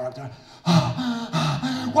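A man's voice making wordless, pained gasps and moans, acting out a wounded woman writhing in pain; it starts after a brief lull about half a second in.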